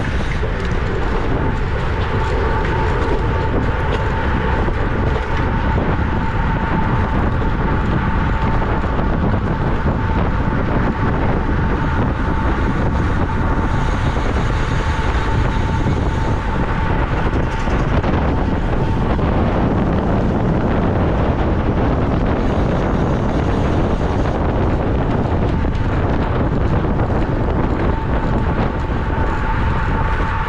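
Wind rushing over a bike-mounted camera's microphone at racing speed, mixed with road and tyre noise, with a thin steady tone underneath.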